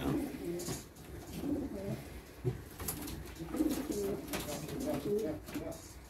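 Domestic pigeons cooing, a run of repeated low coos.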